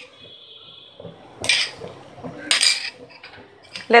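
Two brief scraping clatters of kitchenware, about a second apart, while butter is put into a nonstick frying pan; a faint high steady tone sounds in the first second.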